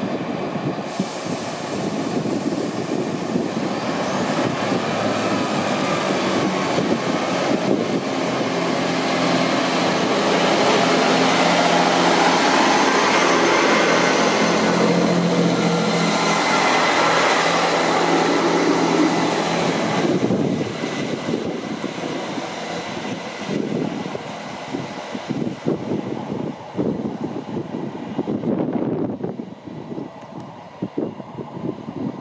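Northern Class 158 diesel multiple unit pulling away from the platform. Its underfloor diesel engines build up in loudness, with a faint rising whine early on, and are loudest as the coaches pass close by. After an abrupt change about two-thirds of the way through, a quieter, uneven sound follows as the unit runs away.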